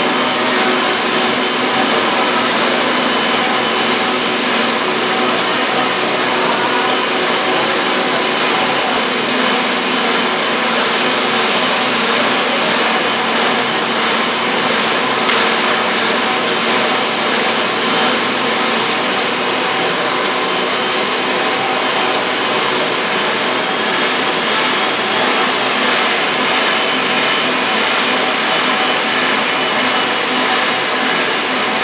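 Steady, loud drone of workshop machinery running, with a brief higher hiss about eleven seconds in.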